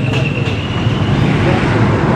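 Steady road-traffic noise with a low engine drone, and a thin steady high tone that fades out about a second in.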